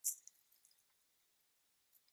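Near silence in a quiet room, broken by a brief soft hiss at the very start and a few faint ticks after it: the narrator's breath and small mouth clicks in a pause of her speech.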